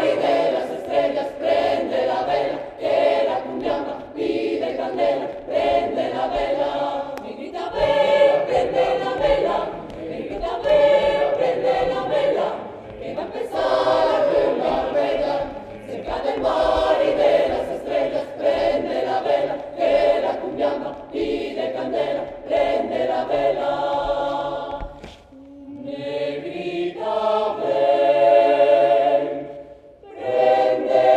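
Mixed choir of men and women singing a cappella in close harmony, a lively rhythmic song carried by many layered voices. About 25 s in the sound thins briefly, then the voices come back in stacked, held chords that build up near the end.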